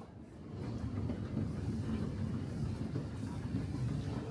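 Escalator running: a steady low mechanical rumble that fades in over the first second and then holds.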